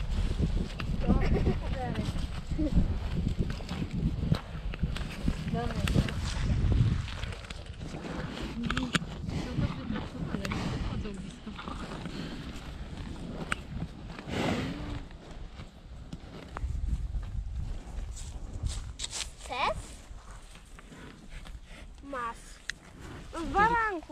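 Indistinct voices and heavy low rumble of wind on the microphone, mostly in the first few seconds, with cows grazing close by, tearing and chewing grass.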